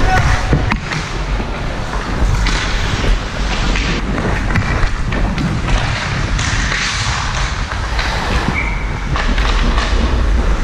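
Ice hockey skates scraping and carving on the ice with a steady low wind rumble on the microphone, broken by frequent sharp clacks and knocks of sticks and puck.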